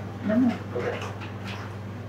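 A man's voice saying one short word, then a pause with quiet room tone over a steady low hum.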